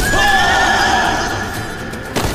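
A horse neighing: one long, wavering whinny that starts suddenly and fades away after about a second and a half, over background music.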